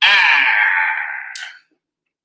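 A man's long, loud, breathy sigh, drawn out for about a second and a half before it fades.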